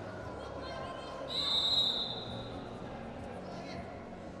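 Referee's whistle blown once, a single steady high-pitched blast about a second long starting a little over a second in, restarting the wrestling after a break. Arena crowd chatter runs underneath.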